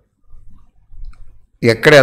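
A short pause in a man's speech, holding only a faint low rumble, then his voice starts again about a second and a half in.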